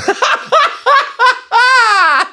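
A man laughing hard: a quick run of short, high-pitched bursts of laughter, then one long high squeal that rises and falls near the end.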